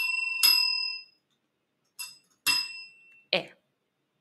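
Chrome desk service bell struck repeatedly. The first ding rings for about half a second, then two lighter dings follow about two seconds in.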